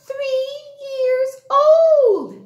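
A woman singing in a high, childlike puppet voice: three long held notes at one steady pitch, with short breaks between them.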